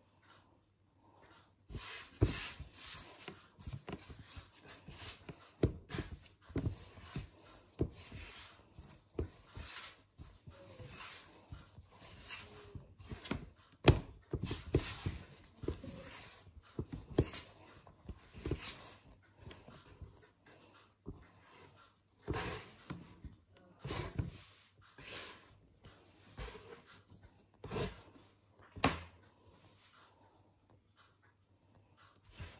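Hands kneading soft, sticky bread dough on a flour-dusted wooden chopping board: repeated squishing, pushing and slapping strokes at an irregular pace, with one sharper knock on the board about halfway.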